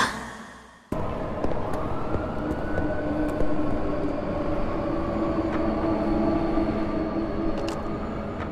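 Music fading out in the first second, then a sudden start of a low, steady rumble with several held tones and a slowly rising tone, an ambient drone from a teaser soundtrack.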